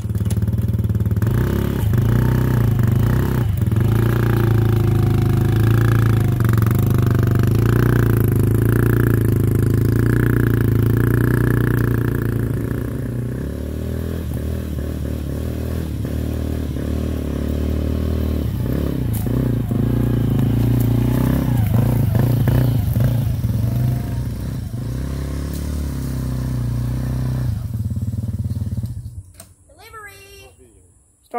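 ATV (four-wheeler) engine running as it is ridden, its pitch rising and falling with the throttle; it is louder over the first dozen seconds, a bit quieter after, and dies away shortly before the end.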